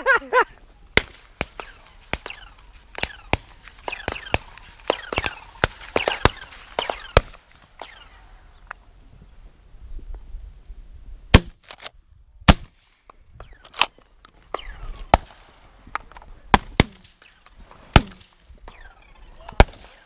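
12-gauge shotgun fire: many sharp shots of varying loudness across the field, some faint and distant, with a handful of very loud close shots coming about a second apart in the second half.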